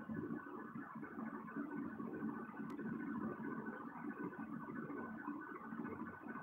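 Steady low background room noise with a faint hum, and one faint click a little under three seconds in.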